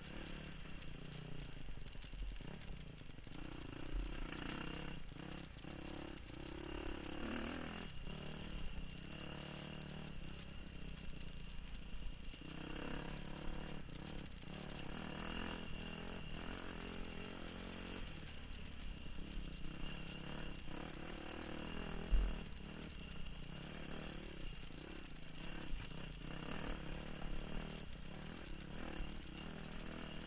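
Dirt bike engine running as it is ridden along a rough trail, with chassis clatter over the bumps. One sharp, loud thump comes about two-thirds of the way through.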